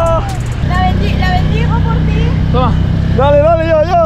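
A small 6 hp outboard motor running steadily with the boat under way.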